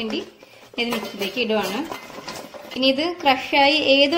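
Fried chicken pieces and a steel plate clattering against a stainless-steel mixer-grinder jar as the chicken is tipped in, with a voice heard over it, loudest in the second half.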